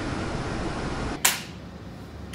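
Steady classroom room hiss, then about a second in a single short, sharp burst of noise as the sound cuts to a quieter room.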